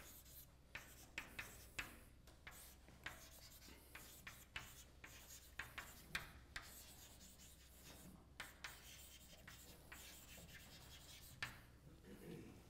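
Chalk writing on a blackboard: faint, irregular short taps and scratches as the chalk strikes and drags across the board.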